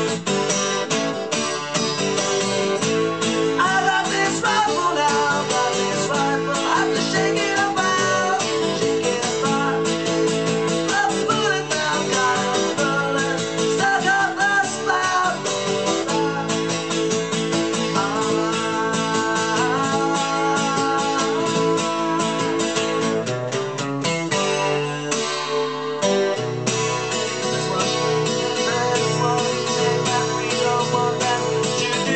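A man singing while strumming a steel-string acoustic guitar in steady chords; the voice drops out about two-thirds of the way through while the strumming carries on.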